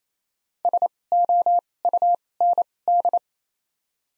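Morse code tone sending the word SOUND at 28 wpm with widened gaps between letters: one steady beep keyed in five groups of dits and dahs, three short (S), three long (O), short-short-long (U), long-short (N), long-short-short (D).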